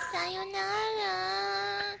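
A singing voice holding one long note, steady with a slight wobble, that cuts off abruptly at the end.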